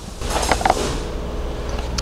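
Rustling, scraping handling noise as the plastic intake housing and screwdriver are moved, swelling about a quarter second in and then settling into a steadier rustle.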